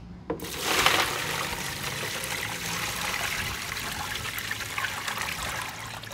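Cooled brine poured from a metal stockpot into a clear plastic food container over a brisket: a steady splashing pour that starts about half a second in, is loudest at first, and eases off near the end.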